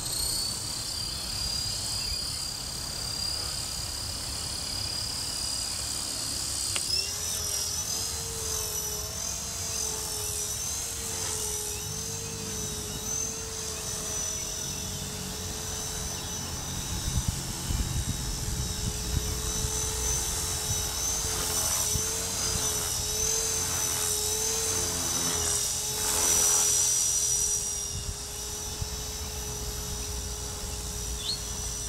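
E-flite Blade 400 electric RC helicopter in flight: a steady whine from its brushless motor and rotor, wavering up and down in pitch as the throttle and collective change. It is loudest about 26 seconds in.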